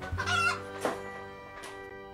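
A hen giving a drawn-out, warbling cluck in the first half-second, over background music with long held notes.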